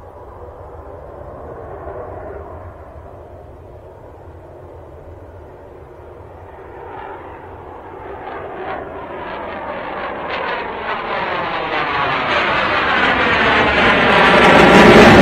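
Eurofighter Typhoon's twin EJ200 jet engines in afterburner on take-off, a distant rumble that grows steadily louder through the second half as the jet comes closer, with a sweeping, phasing tone.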